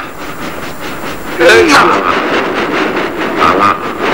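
A voice calling out twice, about a second and a half in and again near the end, over a steady noisy background with a fast, even beat of about five ticks a second.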